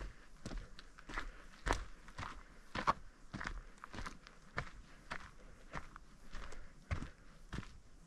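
Footsteps of a person walking at a steady pace on a dirt forest trail scattered with needles and small stones, a little under two steps a second.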